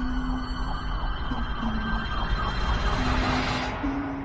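Anime soundtrack: a dense, loud noisy sound effect with wavering sweeps about four times a second, over held low music notes. It swells into a rising whoosh that cuts off suddenly just before the end.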